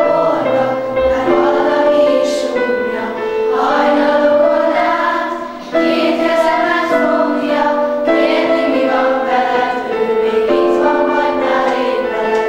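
A children's choir singing a slow song to digital piano accompaniment, in long held notes, with a short break between phrases a little before the middle.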